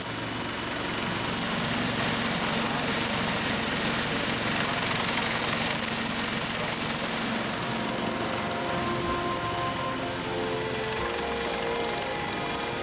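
Westland Sea Lynx naval helicopter running on deck with its rotors turning, a steady rushing noise that holds at an even level.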